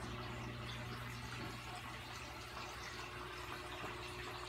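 Saltwater reef aquarium's running equipment: a steady low hum with faint water movement, from the circulating pumps and the water they move.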